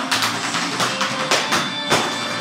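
Tap shoes striking a wooden floor in quick rhythmic steps, with one sharp, loud tap near the end, over fast pop backing music.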